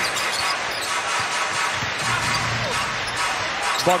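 Steady arena crowd noise in a large hall, with a basketball being dribbled on the court.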